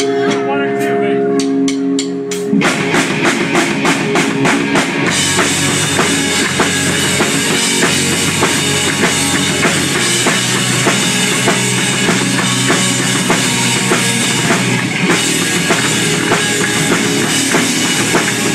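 Punk rock band playing live: a sustained electric guitar note rings for the first couple of seconds, then the drums come in with a fast, even beat. About five seconds in the full band kicks in loud, with crashing cymbals over the guitars.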